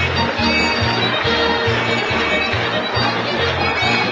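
Upbeat music with a steady bass line of short notes, playing throughout.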